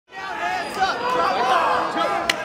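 Crowd of spectators chattering, with many voices overlapping.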